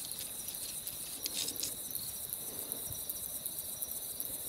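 Crickets chirring steadily at night, a continuous high-pitched trill.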